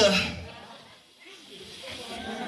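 A man's loud shouted line through a microphone ending about half a second in, then a brief lull and faint voices echoing in a hall.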